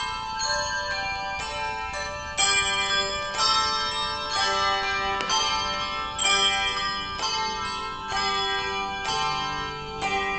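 A choir of English handbells ringing a tune, with fresh strokes about every half second and the bells ringing on between them.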